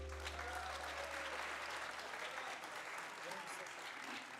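Audience applauding at the end of a song, with a few voices calling out from the crowd, while the last low note of the music dies away.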